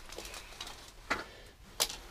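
Mini blinds on a window being tilted open: faint small ticks from the slats, with two sharper clicks, about a second in and near the end.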